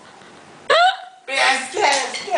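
A person's voice: a sudden short high-pitched vocal sound about two-thirds of a second in, then speech near the end.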